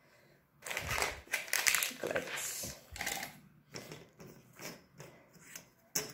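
Paper sheets and cardboard being handled and shifted on a desk: a quick run of rustles and light knocks starting about half a second in, thinning to a few scattered ones later.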